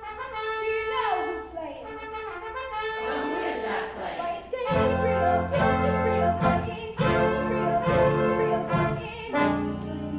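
Theatre pit band playing a brassy swing passage: trumpets and trombones hold and slide their notes, and about halfway the whole band comes in louder, with a low bass and a run of sharp drum hits.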